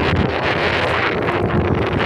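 Strong wind blowing across a phone's microphone: a loud, rushing wind noise heaviest in the low rumble.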